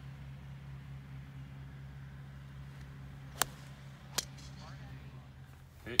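Two sharp clicks a little under a second apart, golf balls being struck on the driving range, over a steady low hum.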